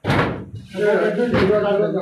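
A sudden loud thump, like a slam, right at the start, and a weaker knock about a second and a half in, with a man talking between them.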